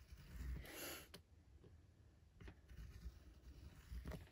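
Faint sounds of a serrated tracing wheel rolled along the edge of a cardstock panel on a cutting mat, pressing in faux stitching. A soft rustle comes about half a second in, a sharp click just after a second, then a few fainter ticks.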